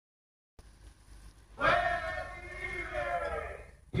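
Recorded voices giving one long whooping cry that slides down in pitch for about two seconds, played back through a hi-fi loudspeaker. It starts about a second and a half in, after a brief silence and faint hiss.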